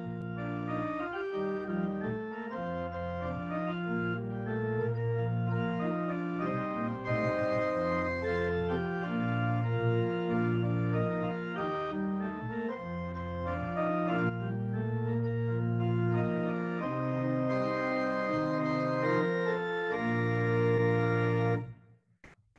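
Organ music: slow, held chords that change every second or two, cutting off suddenly just before the end.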